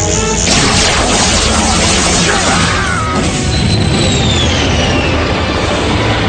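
Dramatic cartoon action score with crashing, booming sound effects as a plane is blasted and set on fire. About halfway through, a high tone glides steadily downward in pitch.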